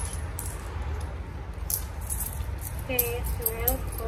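Coins clinking against each other as they are counted out by hand, a scatter of sharp, irregular metallic clicks.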